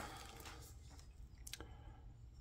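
Near silence with a few faint clicks, a pair of them about a second and a half in, from small cast pewter pieces being handled.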